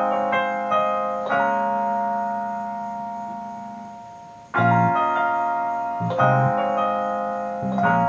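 Playback of a work-in-progress track: piano chords layered with a digital piano, with a bass line under them and no drums yet. One chord rings and slowly fades for about three seconds. Then new chords come in about halfway through, each with a low bass note beneath it.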